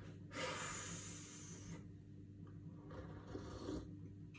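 A long sniff through the nose of a glass of beer, lasting about a second and a half and fading out, followed near the end by a short, faint sip.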